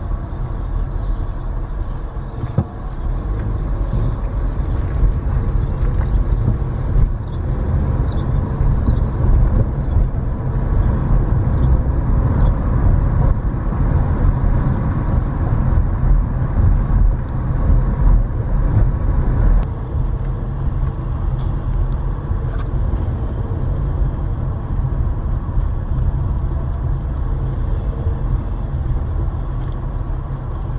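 Car driving, heard from inside the cabin: a steady low rumble of engine and tyre noise that eases slightly about two-thirds of the way through.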